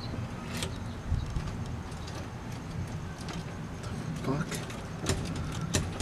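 Keys jangling and clicking in a door lock over a steady low rumble, with a few sharp metallic clicks. The key fails to open it because the lock has been changed.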